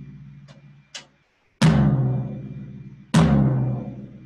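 Floor tom struck twice with a drumstick, about a second and a half apart, each hit giving a deep boomy tone that rings and slowly fades, after two light taps on the head. There is a slight growly quality to the ring, which the drummer suspects comes from the top head still being a little too loose or having wrinkles.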